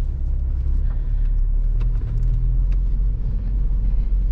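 Cabin sound of a 2013 Mini Cooper S Coupe driving, its turbocharged 1.6-litre four-cylinder running under a steady low rumble of engine and road noise. A few faint clicks can be heard in it.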